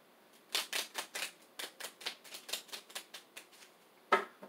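A deck of tarot cards being shuffled by hand: a quick run of crisp card slaps, about five a second, starting about half a second in.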